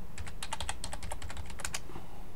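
Typing on a computer keyboard: a fast run of keystrokes, entering a password at a sudo prompt, that stops shortly before the end.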